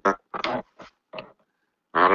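A man's voice making a few short, indistinct vocal sounds, then about half a second of silence, heard over an online voice-chat line.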